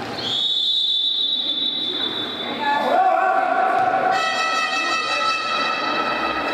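A whistle blown in one long, steady, high blast of about two and a half seconds. It is followed by a loud horn-like tone with several pitches that starts about halfway through and grows fuller about four seconds in.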